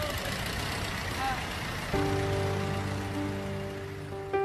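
Instrumental intro of a ballad. A hissing wash of sound plays for the first couple of seconds, then a held chord enters suddenly about halfway in.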